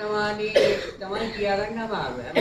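Speech: a person's voice talking, with nothing else clearly heard besides it.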